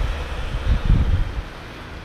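Wind buffeting the camera's microphone in low, uneven rumbling gusts that die down near the end.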